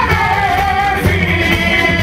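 Live band music with group singing: several voices sing together in harmony, one line gliding down about half a second in, over guitars and a steady drum beat.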